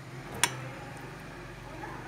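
A single sharp click about half a second in, as the glass bowl of chopped mango knocks against the stainless-steel mixer-grinder jar while the fruit is tipped in. Low, steady background noise under it.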